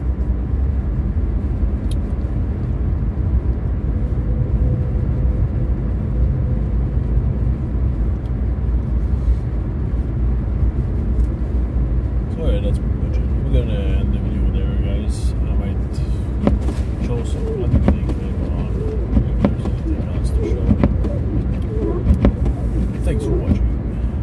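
Steady low rumble inside the cabin of an Infiniti Q50 Red Sport 400 cruising on a snow-covered highway: tyre and road noise with the engine running underneath. In the second half there are a few faint clicks.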